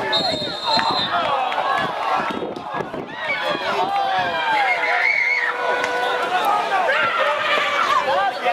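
A short high whistle blast from the referee at the start, then several players' voices shouting and talking over one another in protest after a foul on the soccer pitch.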